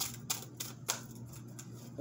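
A deck of tarot cards being shuffled in the hand: a run of quick, sharp card clicks, about three a second early on, then thinning out.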